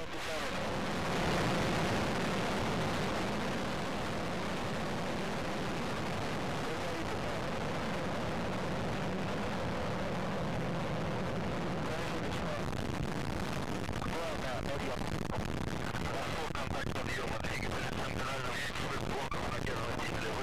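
Soyuz rocket engines firing at liftoff: a steady, unbroken rumble of rocket exhaust noise that swells about a second in and then holds.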